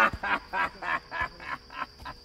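A man's laughter: a quick run of short 'ha' pulses, about three to four a second, fading toward the end.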